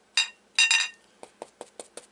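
Two short ringing clinks, then a stencil brush dabbing textile paint through a stencil onto a cotton flour sack towel in quick, even taps, about five a second, starting a little past halfway.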